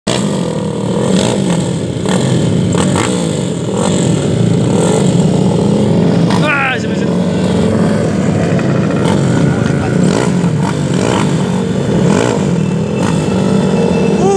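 Motorcycle engines running at a standstill at a drag-race start line, their speed wavering up and down. A short high rising-and-falling call cuts through about six and a half seconds in.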